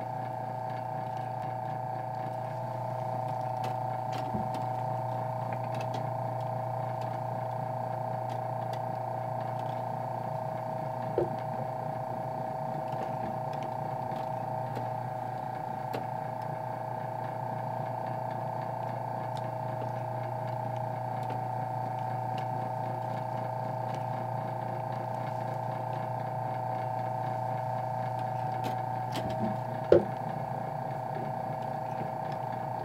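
The eight-cam electric motor and cam mechanism of a 1920s magician automaton running with a steady hum and whine. A few sharp clicks from the mechanism come as the figure moves, the loudest about eleven seconds in and at the very end.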